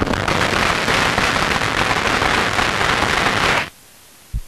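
Audience applauding: a dense, steady patter of many hands clapping that cuts off suddenly near the end.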